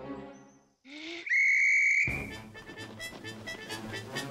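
Cartoon sound effect: a short rising swish, then a loud, steady, high whistle held for under a second that cuts off sharply. Music fades out before it and resumes after it.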